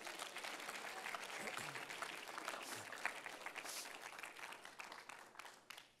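Congregation applauding after an emphatic line from the pulpit, the clapping thinning out and dying away near the end.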